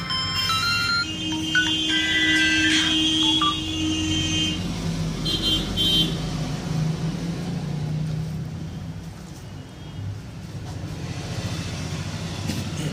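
Samsung Galaxy M20's phone speaker playing a synth ringtone preview, a few ringing tones over about four seconds, the speaker still working after its cola soak. A steady low hum runs underneath.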